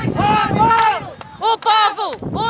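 High-pitched shouting voices of a marching crowd of protesters, no words made out. There is one long held shout, then two short ones near the end.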